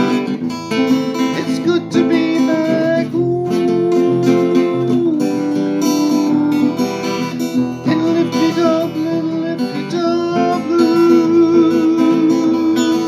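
Acoustic guitar strummed steadily, with a man's voice holding long, wavering sung notes over it.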